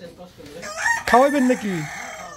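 Rooster crowing once: a single crow of about a second, starting near the middle, rising at the start and tailing off downward.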